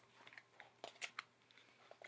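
Near silence with a few faint clicks and rustles of a hardcover picture book being opened and handled.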